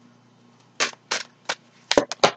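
Tarot cards being handled as one is drawn from the deck: four or five short, sharp card snaps in quick succession in the second half.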